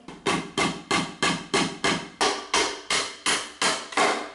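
Claw hammer striking a 2x4 wooden frame in a steady run of about a dozen even blows, roughly three a second.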